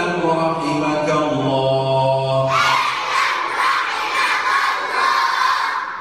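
A man chants a line of an Arabic creed text in a slow, drawn-out voice, and about two and a half seconds in a group of children repeat it loudly in unison. It is call-and-response memorisation of the text.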